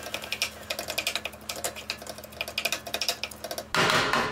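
Wooden spatula chopping and scraping ground turkey in a frying pan, a quick, irregular run of taps and scrapes. Near the end a brief, louder rush of noise.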